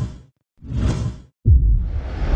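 Whoosh sound effects for an animated logo reveal: a short whoosh fading out just after the start, a second one from about half a second to a second and a half in, then a heavy low hit at about a second and a half that opens into a longer, brighter whoosh.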